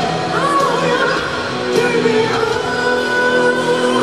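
Live rock band playing with a male lead vocalist singing, amplified through a stadium sound system.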